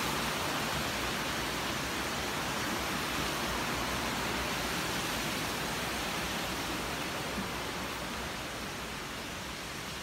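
Steady rush of flowing water, a little quieter near the end.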